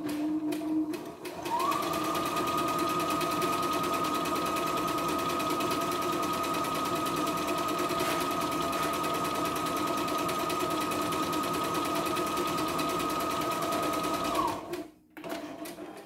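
CNY E960 computerised sewing and embroidery machine sewing a test stitch through fabric at a steady speed. It starts about a second and a half in and stops about a second and a half before the end, its high motor whine rising as it speeds up and falling as it stops.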